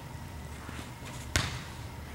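A bat striking a softball once, about a second and a third in: a sharp crack with a short ring. A steady low hum runs underneath.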